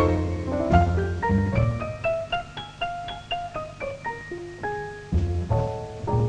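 Jazz piano solo on a Steinway grand piano: a single-note right-hand run climbs step by step into the high register and then comes back down, with heavier low notes at the start and again near the end.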